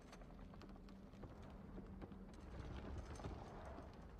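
Faint film sound effects: irregular crackling clicks, thickest in the second half, over a low steady rumble.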